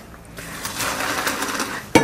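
Boiling-hot water from a pan of boiled orange peel pouring through a colander into a stainless-steel sink, building up after a moment into a steady splashing rush. A short sharp knock comes right at the end.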